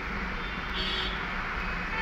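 Steady background noise with a low hum underneath, with no distinct events.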